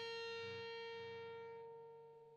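An electric guitar note rings out after being struck and fades slowly, its upper overtones dying away first.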